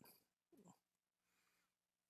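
Near silence: room tone, with a faint brief sound about half a second in.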